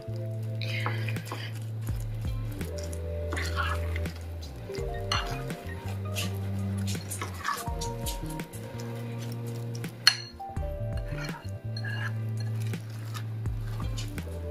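Background music with a steady low bass line, over a metal spoon scraping and clinking against a glass mixing bowl as stiff peanut butter and rolled-oat cookie dough is stirred. There is a sharper clink about ten seconds in.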